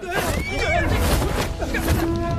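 A horse whinnies once, about half a second in, over a low rumble; steady music comes in near the end.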